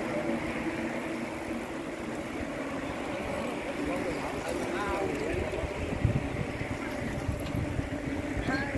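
A long column of bicycles rolling past close by: a steady rolling hiss from the passing riders, with scattered voices of cyclists chatting as they go by, a little louder about five seconds in.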